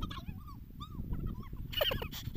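A dog whimpering and yipping in several short high calls that rise and fall, with a louder, sharper cry near the end. A low rumble of wind on the microphone runs underneath.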